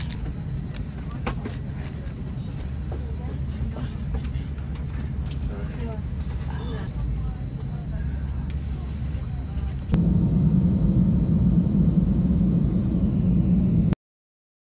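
Steady low rumble of an airliner cabin, with faint voices over it. About ten seconds in it cuts suddenly to a louder, deeper jet engine rumble, heard from inside the cabin.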